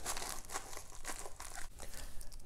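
Plastic packaging crinkling and rustling in the hands as a mailed package of sports cards is unwrapped, a rapid, irregular run of small crackles.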